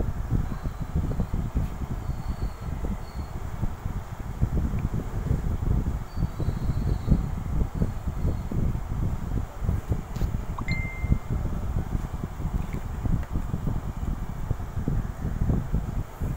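Rough, uneven low rumbling noise throughout, with a few faint, brief high ringing tones now and then.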